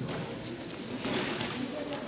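Indistinct voices calling out in a sports hall, likely coaches shouting to the wrestlers, with a few light taps.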